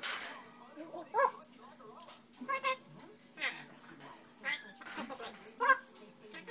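African grey parrot calling: a short harsh noise at the start, then a string of brief whistled and chattering calls with sliding pitch, about one a second.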